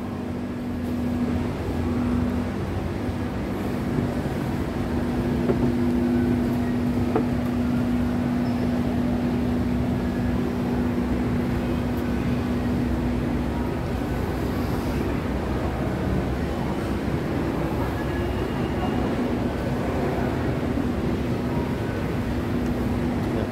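Indoor shopping-mall ambience: a steady low rumble with a steady hum that fades out about two-thirds of the way through.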